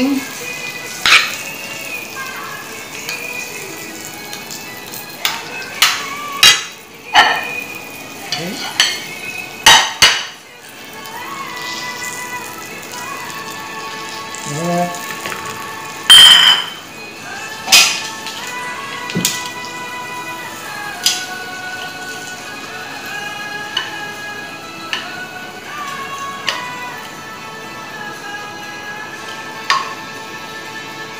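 A metal spoon and tongs clinking and scraping against a frying pan and a plate while food is served out, in scattered sharp clinks with the loudest about 16 seconds in. Background music with held, slowly changing notes runs underneath.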